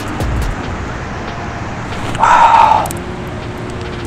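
Road traffic in the background, with a low rumble in the first half second and a brief louder rushing sound a little past two seconds in.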